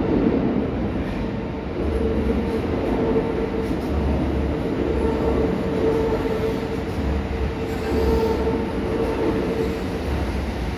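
Kintetsu 80000 series Hinotori limited express electric train running into an underground station platform. Its wheels rumble on the rails, with a steady high-pitched whine held throughout, and the sound echoes around the enclosed station.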